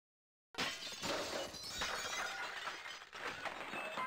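Shattering sound effect for an animated logo breaking: silence, then a sudden smash about half a second in, followed by many small pieces clinking and scattering.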